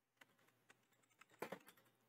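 Computer keyboard typing: a few faint keystrokes about half a second apart, then a quick run of louder keys near the end.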